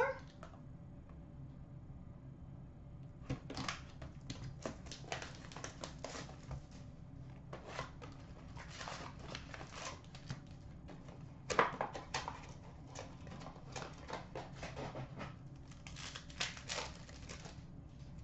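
A sealed hockey card box being opened by hand: cardboard and paper packaging crinkling and tearing in a run of short crackles and rustles, the loudest about two-thirds of the way through, with the packs and cards inside being handled.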